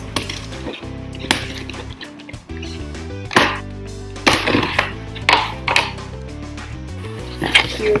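Scissors cutting through packing tape on a cardboard shipping box, several short sharp scrapes and crackles, then the cardboard flaps being pulled open near the end. Steady background music plays underneath.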